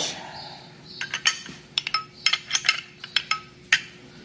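Steel wrenches clinking against each other as one is picked out: a quick, irregular series of metallic clicks and clanks, some ringing briefly, starting about a second in.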